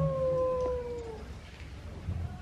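A dog howling once in a single long, drawn-out note that falls slightly in pitch and fades away after about a second, heard faintly in the background.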